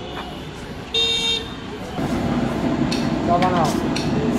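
A short, steady vehicle horn toot about a second in, over street background noise. From about two seconds the background grows louder, with voices.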